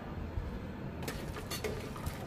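Whole spices sizzling faintly in hot mustard oil in a pressure cooker, stirred with a metal spoon that gives small clicks and scrapes against the pot from about a second in.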